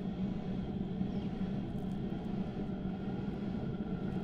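Steady low mechanical hum with no distinct events.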